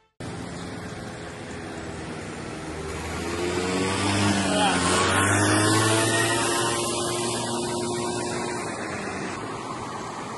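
A motor vehicle passing close by on the road: its engine and tyre sound swells over a couple of seconds, drops in pitch as it goes past, then fades, over steady outdoor noise.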